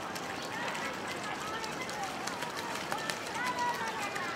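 A flock of flamingos gabbling, many short calls overlapping one another, with one longer held call near the end.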